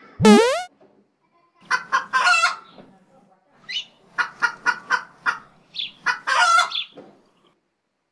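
A short, loud, sharply rising whistle, then a rooster crowing and clucking: two longer crows and a run of short, evenly spaced clucks between them.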